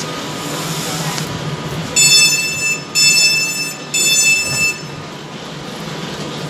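Three identical high electronic beeps, about a second apart and each nearly a second long, from a train's door warning beeper as the doors of a train standing at the platform are released. Under them is the steady hum and rumble of the train.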